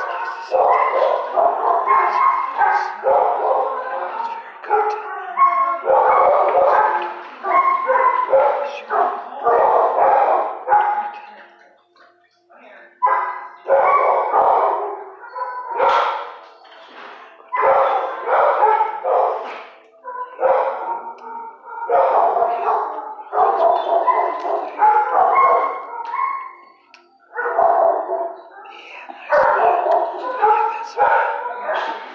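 Dogs in a shelter kennel barking and yelping, nearly continuously, with a couple of brief lulls.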